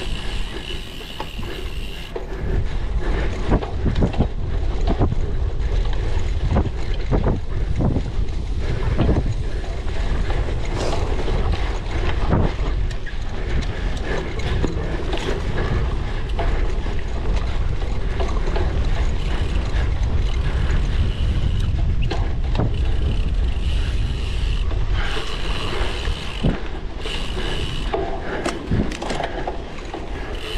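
Cyclocross bike ridden over bumpy grass: chain and drivetrain rattling and clicking irregularly over the bumps, over a steady low rumble of wind and tyres. The rear hub's freewheel buzzes at a high, even pitch while the rider coasts, for the first couple of seconds and again over the last few seconds.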